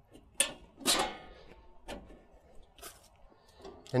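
Steel clamshell panels on a steel arborist's cart clanking as they are hooked and snapped onto the top bar: two sharp metal knocks about half a second and a second in, then a couple of fainter clicks.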